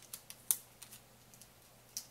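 Light clicks and taps from hands handling a thin copper wire and its alligator clip on a tabletop. There are a few sharp clicks, the loudest about half a second in and another at the very end.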